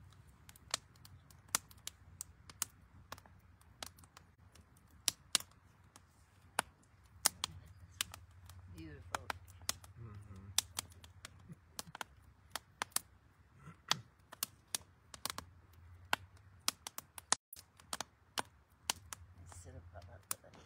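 Wood fire in a havan fire pit crackling, with sharp irregular pops a few times a second.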